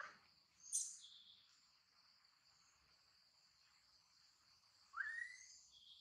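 Faint forest ambience: a steady high insect drone, with a sharp high chirp about a second in and a short rising call near the end.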